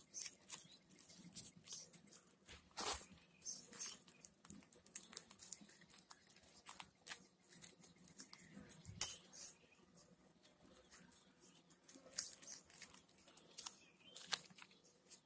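Faint, irregular rustling, crinkling and small clicks of paper being folded and pulled tight by hand, with a quieter lull before a last few crackles near the end.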